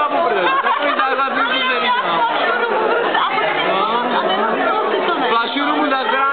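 Several people talking at once: steady, overlapping chatter of a busy bar room, with no single voice standing clear.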